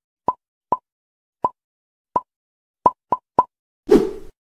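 Cartoon pop sound effects: seven short plops at uneven intervals, the last three close together, followed by a louder, deeper thud right at the end as the animated leg kicks the button.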